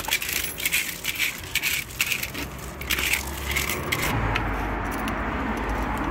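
Irregular crisp crunching and crackling, a quick run of short clicks, for about four seconds. Then a steady low rumble of road traffic takes over.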